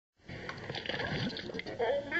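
Cartoon soundtrack played through a screen's small speaker and picked up by a phone: a noisy jumble of sound effects, then a character's voice starting near the end.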